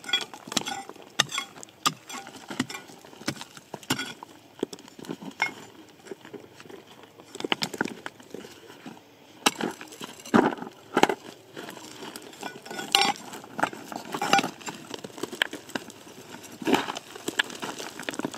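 Metal digging tool striking and prying among loose stones, with rocks clinking and knocking against each other in irregular strikes; a cluster of louder knocks comes a little past the middle.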